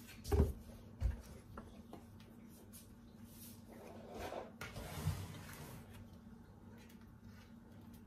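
Kitchen handling sounds: a plastic bottle of cooking oil set down on the counter with a low knock, a second knock a moment later, then faint rustling and another knock as a silicone pastry brush and saucer of oil are used to grease silicone muffin cups.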